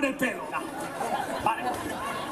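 Voices only, chiefly a man's voice, with no other sound standing out.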